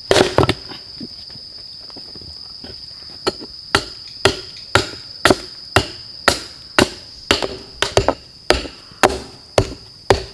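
Wooden baton knocking on a blade driven into a log, splitting it into thin boards. A heavy blow comes at the start, then after a pause a run of sharp, steady knocks about two a second.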